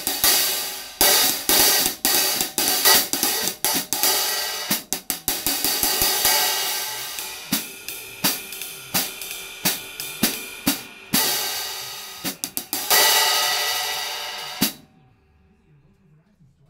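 A pair of 15-inch hand-made hi-hat cymbals being played: a run of quick struck strokes mixed with longer bright open washes. The playing stops a little over a second before the end.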